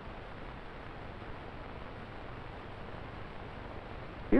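Low, steady hiss of an old optical film soundtrack, with no other sound over it.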